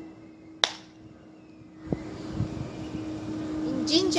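A single sharp hand clap about half a second in, the second of the two worship claps given in prayer at a Shinto shrine.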